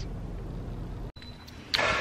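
Low steady rumble inside a car's cabin, which cuts off abruptly about a second in. Quieter room sound follows, with a woman starting to speak near the end.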